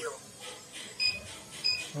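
Cash counting machine's keypad beeping as its buttons are pressed to change the denomination setting: two short electronic beeps, one about a second in and one near the end.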